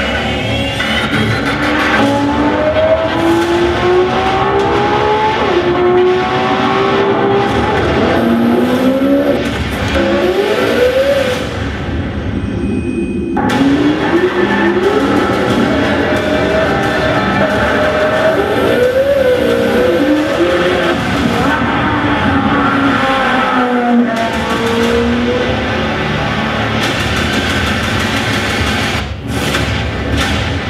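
2020 Chevrolet Corvette Stingray (C8) V8 engine revving hard, its pitch climbing and dropping repeatedly through gear changes, with tires squealing as the car slides, over a music soundtrack. It is heard from a promotional video played through a hall's loudspeakers.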